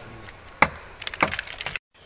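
Sharp wooden knocks and cracks from a stick-built tree platform. There are two single knocks, then a quick cluster of them near the end.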